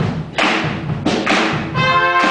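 High school concert band playing a string of loud accented full-band hits with percussion. Near the end, brass come in holding sustained notes.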